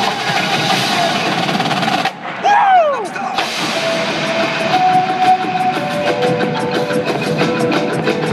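Marching band at full volume, hornline and drums together, stopping abruptly about two seconds in. A single falling swoop in pitch follows. The band then carries on more quietly with rapid drum and percussion ticks under held, stepping notes.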